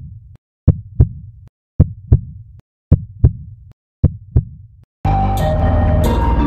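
Heartbeat sound effect: deep double thumps, lub-dub, about once a second. Music comes in suddenly about five seconds in.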